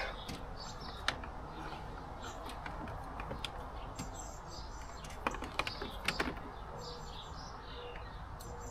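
Light clicks and rustles of a dashcam and its power cable being handled, with a few sharp clicks about five to six seconds in. Faint birdsong runs underneath.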